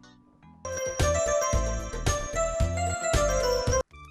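Short musical jingle with a steady bass beat, starting about half a second in and cutting off suddenly just before the end.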